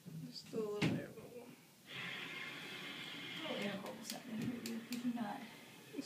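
Quiet, unclear voices with a few short, sharp clicks about four seconds in: a fingernail flicking a plastic syringe barrel to shake air bubbles loose.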